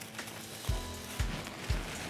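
Quiet background music with light crackly rustling of fabric ribbon being pushed into artificial Christmas tree branches, and a few soft low thumps.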